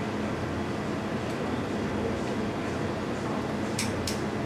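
Steady low room hum with a faint hiss and no speech, broken near the end by two short sharp clicks.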